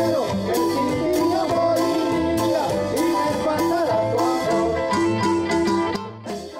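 A band playing chicha (Peruvian cumbia) on electric guitars, keyboard and Latin percussion, with a steady beat of about two hits a second.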